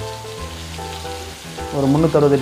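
Marinated chicken pieces sizzling on a hot tawa (flat griddle), a steady frying hiss.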